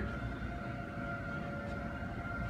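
Steady indoor room tone of a large building: a low even hum with a faint, constant high-pitched whine.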